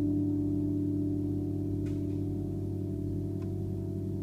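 Electro-magnetic harp strings kept sounding by electromagnets: a steady drone of several held tones with no plucked attack, easing slightly quieter. Two faint clicks come about two and three and a half seconds in.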